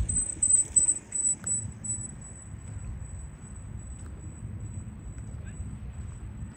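Low, uneven rumble of wind buffeting the microphone, louder in a few gusts during the first two seconds. A thin, steady high-pitched tone runs throughout.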